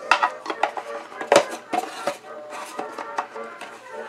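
Clear plastic lens being fitted back onto a plastic Spartus wall clock case, heard as a string of irregular light clicks and taps as the clock is handled.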